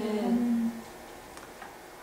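A man's voice holding a short hum for under a second, then a pause with only faint room tone.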